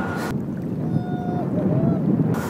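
Wind buffeting the microphone over the wash of waves, recorded from a kayak on choppy open water. A faint drawn-out call sounds twice over the rumble, the second one rising.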